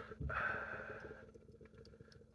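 Beer being poured from a can into a tilted glass: a soft rushing pour that fades away after about a second.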